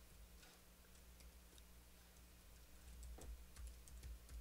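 Faint typing on a computer keyboard: scattered single key clicks, a little closer together and louder in the last second, over a low steady hum.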